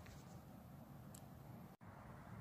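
Near silence: faint room tone with a low hum, and a brief dropout near the end at an edit.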